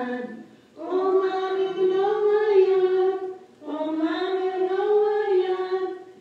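Ojibwa hymn sung by voices in slow, held phrases: two long phrases of about three seconds each, separated by a short breath.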